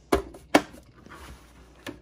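Plastic bird-feeder perch being pushed into place on the feeder's dish: two sharp clicks about half a second apart, then faint handling noise and a small tick near the end.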